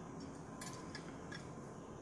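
A few faint, light clicks of small metal fly-tying tools being handled at the vise, over low room hiss.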